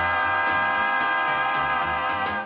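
Vocal quartet holding one long, steady chord in close harmony, with bass notes moving underneath.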